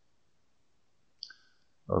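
Near silence, broken about a second in by one short click with a faint ringing tone to it; a man starts speaking at the very end.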